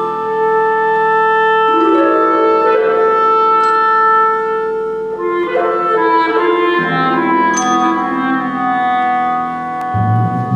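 Clarinet holding long, slow notes over harp and percussion in a live chamber performance, with a bright ringing percussion stroke twice, about four seconds apart.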